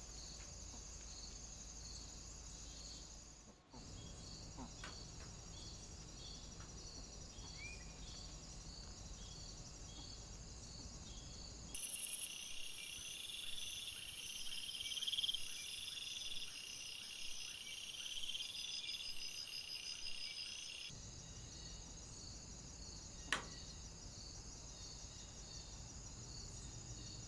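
Woodland insect chorus picked up by trail-camera microphones: rhythmic high-pitched chirping, with a denser chorus of crickets in a night-time stretch in the middle. The sound changes abruptly where the clips cut, and there is one sharp click near the end.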